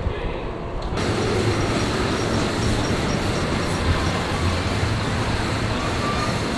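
A train on a Morgan steel hyper coaster rolling along its track with a steady, dense roar of wheels on steel rail, growing suddenly louder about a second in.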